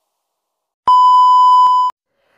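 A single electronic beep: one steady, mid-pitched tone about a second long that starts and stops abruptly with a click, beginning about a second in.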